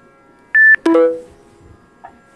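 Electronic beep: a short high tone lasting about a quarter of a second, then a lower tone that starts sharply and rings out, fading over about half a second.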